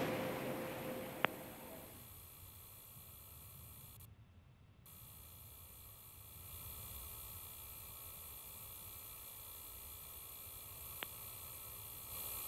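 Faint steady hiss of the open launch-control countdown channel between callouts, with a single click about a second in and another near the end. The hiss drops out briefly about four seconds in.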